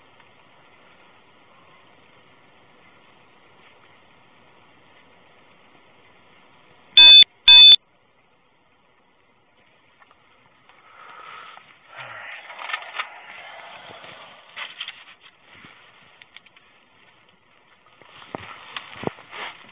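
Two short, loud electronic beeps about half a second apart. A few seconds later a pen scratches on a paper ticket form and the paper rustles.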